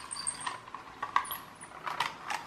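A toy pull-back car's spring motor and gears running down as it rolls across a plastic surface. A faint high whir fades out in the first half second, followed by a few light clicks and taps.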